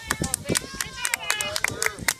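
Several voices talking and calling out at once, quieter than close talk, with scattered short sharp clicks throughout.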